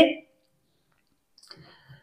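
The last of a spoken word cuts off, then near silence with one faint click about one and a half seconds in.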